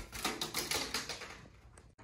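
Plastic water bottles clattering on a wooden floor as a rolling ball knocks them over: a quick rattle of knocks and taps that thins out after about a second.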